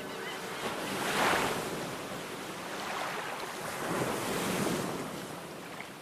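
Small waves washing against shoreline rocks, with wind. The wash swells about a second in and again around four seconds in.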